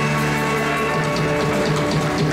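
Live band playing beach music, an instrumental stretch with held chords over drums and repeated cymbal strokes.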